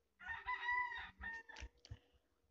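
A single drawn-out animal call lasting about a second, faint in the background, followed by a few soft clicks near the end.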